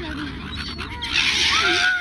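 Silver gulls calling around people feeding them. A loud, harsh, drawn-out squawk comes in about halfway through, its pitch sliding slowly down.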